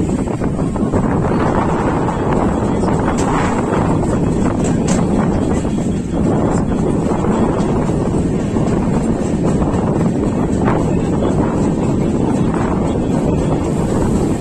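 Passenger train coach running slowly along the track: a steady rumble of wheels on rail, with wind buffeting the microphone at the open door.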